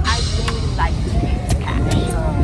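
Night street noise: low traffic rumble from cars alongside, with people's voices and some music in the mix and a few sharp clicks.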